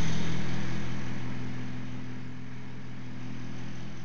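Steady low machine hum made of several fixed tones, easing a little in level over the first two seconds.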